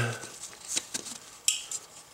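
A few light clicks and a short rattle of a plastic wiring connector being handled and pushed onto a transfer case's electric shift actuator.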